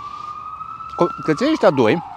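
An emergency vehicle's siren wailing, one slow glide that rises in pitch until about a second in and then falls.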